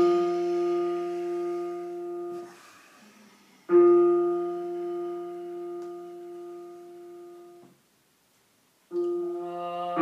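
Piano playing long held notes in the middle register. The first is already sounding at the start and dies away over about two seconds. A second is struck about four seconds in and fades until it is cut off short. After a brief silence a new note sounds near the end.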